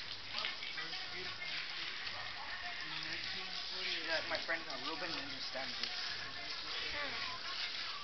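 Garden hose spray nozzle hissing steadily as water sprays onto a dog's coat during a bath, with quiet voices over it.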